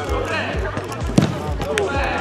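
A football struck hard once, a single sharp thud a little over a second in, with players shouting around it.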